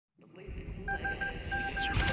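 A rapid run of short electronic beeps at one steady pitch starts about a second in, over a low rumbling noise bed, with a quick falling whistle near the end: the synthesized intro of a song.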